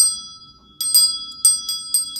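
Small brass hand bell rung by hand: a single strike, then after a short pause a quick run of strikes, each leaving a bright high ringing that carries on between them.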